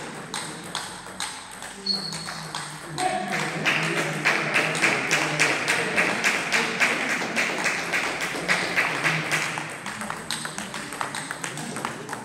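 Table tennis balls clicking off bats and tables across a sports hall, in quick irregular ticks. From about three to ten seconds in there is a louder, denser run of quick rhythmic clattering.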